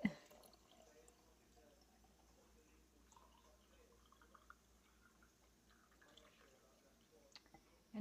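Very faint trickle of cooled black tea pouring from a glass measuring cup into a glass mason jar, with a few soft drips.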